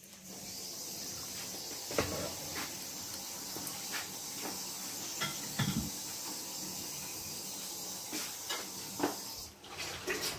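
Beaten eggs with chopped chorizo sizzling in a nonstick frying pan: a steady hiss with a few small knocks and clicks, fading just before the end.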